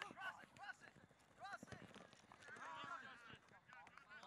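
Faint shouts from players and coaches across a soccer field, with the quick patter of running footsteps on the grass.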